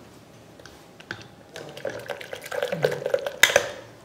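Steel spoon stirring milk in a glass jug: rapid clinks of the spoon against the glass with the milk swirling. It starts about a second and a half in, with one louder clink near the end.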